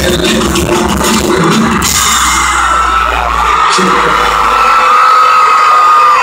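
Live concert music with a heavy beat over the arena PA, picked up loudly on a phone. About two seconds in the beat drops away, and by four seconds the bass is gone too, leaving the crowd's sustained high-pitched screaming and cheering.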